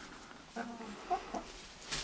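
Chickens clucking quietly in a hen house: a few short clucks in the middle.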